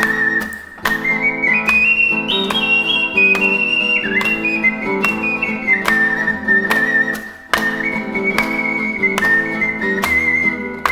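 Italian-style Noble mini ocarina playing a Chinese folk melody over acoustic guitar accompaniment. The high, pure ocarina line climbs note by note to its top about two seconds in, then steps back down and holds a lower note, with two short breaks in the phrase, while the guitar plucks steadily underneath.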